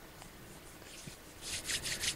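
Faint room noise, then from about a second and a half in a quick run of scratchy rubbing noises close to the microphone.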